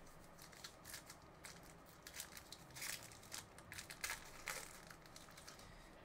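Faint crinkling and rustling of a card wrapper as a framed trading card is unwrapped by hand, with scattered light clicks.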